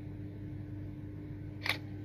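Steady low room hum with a single short, sharp click near the end.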